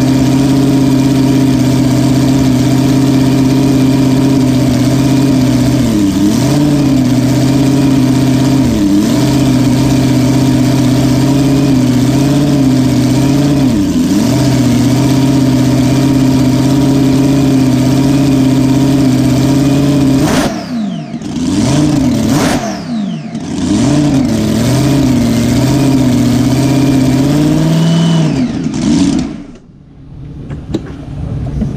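Supercharged alcohol-burning 484 Keith Black Hemi idling with a steady tone, its revs dipping briefly a few times. About two-thirds of the way through it is blipped in several quick revs, settles back to idle, then winds down and shuts off just before the end.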